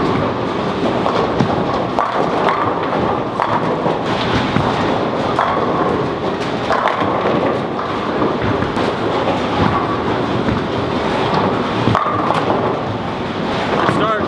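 Busy bowling center din: bowling balls rolling down the lanes and pins crashing across many lanes at once, a steady dense clatter with frequent sharp knocks.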